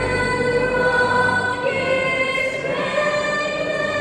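A girl singing solo into a microphone, amplified over an arena sound system, holding long notes that step up in pitch twice.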